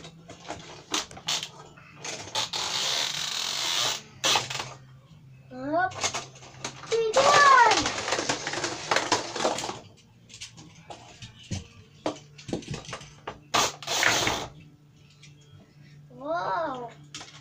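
Plastic toy cars clicking and rattling against a plastic toy parking garage with spiral ramps, with a few longer rattling stretches. A child's voice makes rising and falling sounds about six to eight seconds in.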